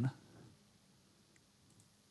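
Quiet room tone with a couple of faint, small clicks about a second and a half in.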